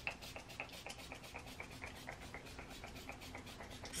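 A pump spray bottle of makeup setting spray gives one spritz right at the start, followed by faint rapid ticking, about six or seven ticks a second.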